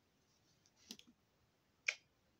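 Near silence with faint room tone, broken by a few short, faint clicks about a second in and one more near the end.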